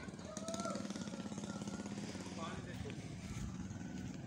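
A steady, rapid low pulsing like a small engine running, with faint voices over it.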